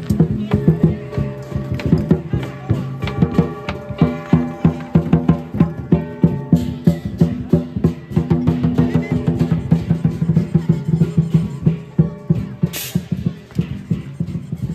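Chinese lion dance percussion: drum, gong and cymbals beaten in a fast, steady rhythm, several strikes a second. A short, sharp burst sounds near the end.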